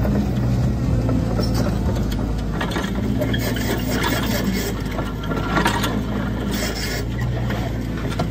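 Excavator diesel engine running steadily while a blade on its tiltrotator is dragged through soil and roots, scraping and rasping with scattered short cracks.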